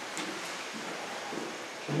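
Quiet room background in a pause between speakers: a steady hiss with a faint click early on, and a man's voice beginning right at the end.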